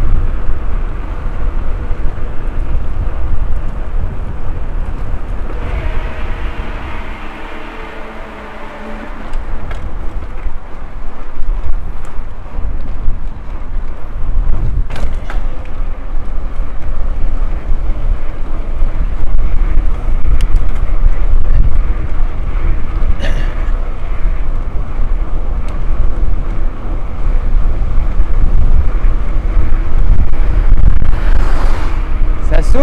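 Wind buffeting the bike-mounted camera's microphone while riding, a loud, steady low rumble. It eases briefly while a pitched hum sounds for a few seconds around the sixth to ninth second, and a few sharp clicks come later.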